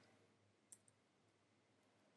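Near silence: room tone, with one faint computer-keyboard keystroke click a little under a second in.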